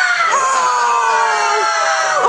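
A child screaming with excitement on opening a present: long, high-pitched screams, each held and slowly falling in pitch, a new one starting about a third of a second in.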